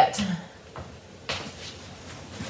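Handling noise as card kits are fetched: two short knocks, the second and louder one about a second and a half in, like a cupboard or drawer being opened or closed.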